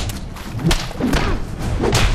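Punches landing in a brawl, four heavy thuds roughly half a second apart.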